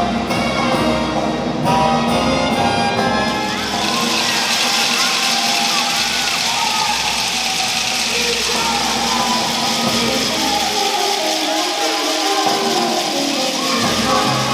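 Brass band playing marinera music; from about four seconds in, a crowd's cheering, shouting and whistling rises over the band and stays loud.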